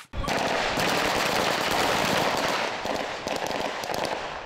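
Rapid rifle gunfire in a firefight: many shots fired in quick succession and overlapping, forming a dense continuous clatter that starts a moment in and eases slightly near the end.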